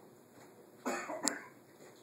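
A person coughs once, about a second in: a short, rough burst that ends in a sharp click.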